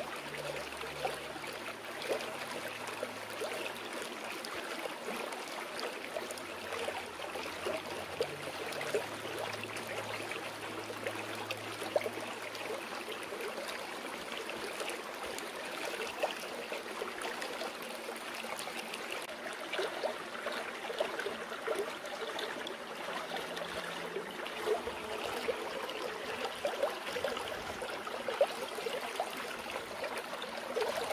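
Flowing water babbling and splashing steadily, as in a rocky stream. Faint low sustained notes of a soft piano track sit underneath in the first half.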